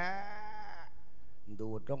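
A monk's voice holding one drawn-out sung note for almost a second, rising slightly and then held level at a higher pitch than his speech: the melodic drawl of a Thai thet lae (sung sermon) chant. After a short pause his words resume.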